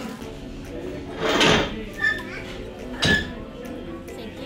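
Fast-food restaurant background of voices and music, with two short, louder noises about a second and a half and three seconds in.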